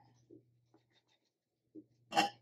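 Near silence, with the faint scratching of a watercolour brush working paint in the palette and on the paper, and two soft short sounds, one early and one near the end.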